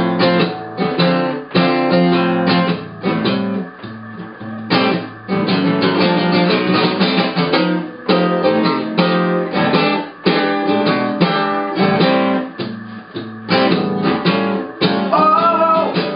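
Ovation Super Adamas acoustic guitar played solo in a blues, rhythmic strummed chords with single-note fills between them. A man's singing comes in near the end.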